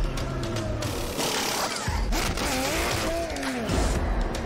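Background music mixed with the sound of a Porsche 911 RSR racing car at a pit stop. There is a rush of noise a little over a second in, and in the second half a pitched sound glides up and down.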